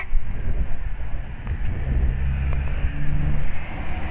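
Heavy rain pouring onto a wet road and pavement, a steady hiss, with gusting wind rumbling on the microphone. A vehicle engine hum comes in about halfway through.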